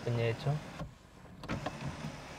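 Electric sunroof motor of a Mahindra Scorpio-N starting up about one and a half seconds in and running steadily as the roof panel slides open.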